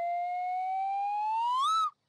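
Cartoon whistle sound effect: one smooth whistle-like tone sliding slowly upward in pitch, climbing faster near the end and then cutting off.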